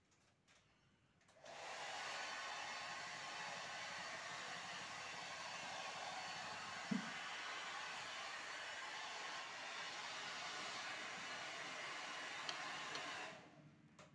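A hand-held hair dryer blowing a steady stream of air to clear loose toner dust out of an opened photocopier. It switches on about a second and a half in and cuts off shortly before the end, with one short knock about halfway through.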